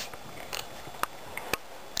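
A few short, sharp clicks, spaced irregularly about half a second apart, over quiet room tone.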